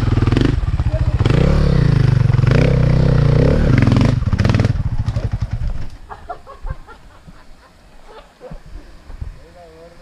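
Dirt bike engine revving hard and unevenly under load as the bike climbs a rocky trail, its pitch rising and falling with the throttle. About five seconds in it fades quickly as the bike pulls away up the trail.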